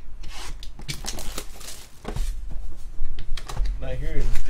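Shrink wrap being cut and stripped off a cardboard trading-card hobby box and the box lid opened: a quick run of clicks with crinkling rustles.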